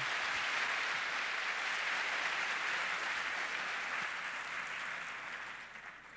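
Audience applauding: a dense, even clapping of many hands that dies away near the end.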